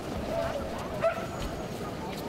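Sled dogs yipping and whining in short, high, wavering calls, with a sharp click about a second in.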